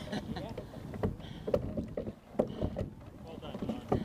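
Sculling boat under way: several sharp knocks from the oars and their gates over the rush of water along the hull as the sculler takes strokes.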